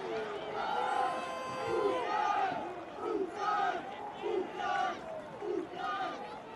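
Men shouting and yelling in celebration of a goal just scored: a long held shout, then a run of short repeated shouts over background crowd noise.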